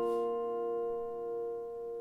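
Two natural harmonics at the seventh fret of the A and D strings of a steel-string acoustic guitar, plucked together just before and left to ring as a bell-like chord, fading slowly. They stand in place of a strummed final E chord.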